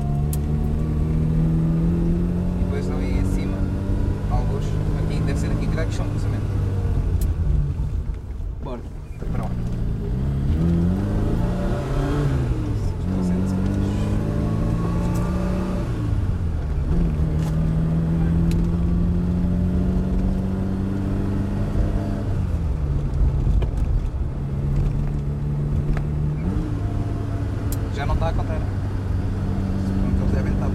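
Inside the cabin of an Opel Kadett C 1204, its four-cylinder engine is heard under way. The engine note dips briefly about a third of the way in, then climbs and drops several times as the driver accelerates and changes gear, with steadier stretches of cruising between.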